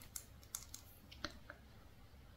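Faint, irregular light clicks and taps, about five or six in two seconds, from fingernails tapping and handling a makeup brush's handle.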